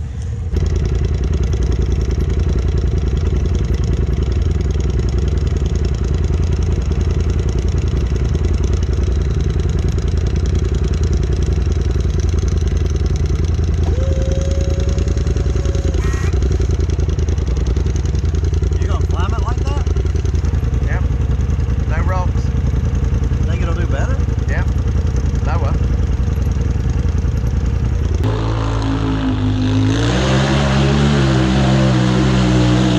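Polaris RZR side-by-side engine running steadily under load, heard from inside the cab as it climbs a dirt trail. Near the end the sound changes to an off-road engine revving up and down.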